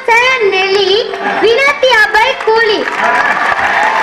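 Speech: a boy's high-pitched voice speaking loudly into a microphone.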